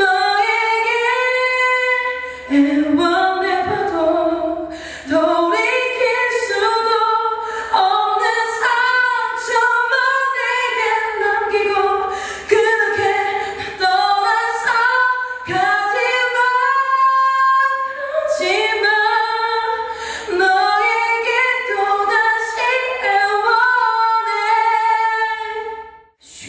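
A woman singing solo a cappella into a handheld microphone, with long held notes and sliding pitch. There are short breaks between phrases.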